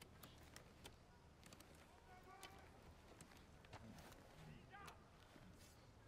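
Near silence: faint outdoor ambience with scattered soft clicks and brief, distant murmured voices.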